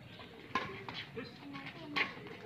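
Two sharp racket hits on a badminton shuttlecock, about a second and a half apart, with spectators talking in the background.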